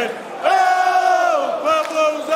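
Large crowd of football supporters chanting together in a stadium. About half a second in, many male voices hold one long note that slides down at its end, followed by shorter sung notes.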